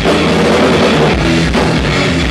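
A live thrash-punk band playing loudly: distorted electric guitar over a fast drum kit, in an instrumental stretch with no singing.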